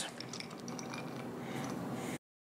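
Dark chocolate chunks dropping from a small bowl onto soft cookie dough in a cast iron skillet: a few faint, soft ticks within the first second, over a faint steady hum.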